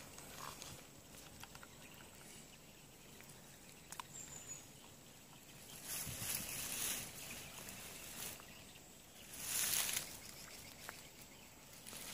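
Quiet outdoor ambience by the water, with a light click about four seconds in and two brief rushes of noise, about six and nine and a half seconds in.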